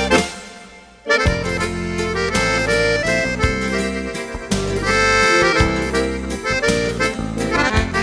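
Instrumental break of a gaúcho folk song: accordion playing the melody over strummed acoustic guitar. The music dies away briefly at the start and comes back in about a second in.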